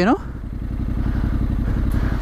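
Motorcycle engine idling with a steady low pulse while a second adventure motorcycle approaches on gravel, its engine growing gradually louder.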